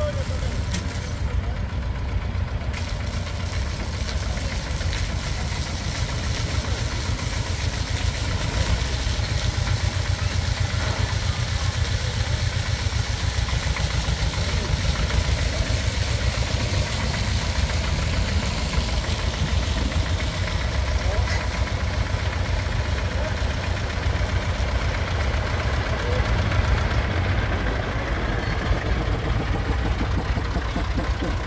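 Farm tractor's diesel engine running steadily at low revs close by, an even low chugging throughout.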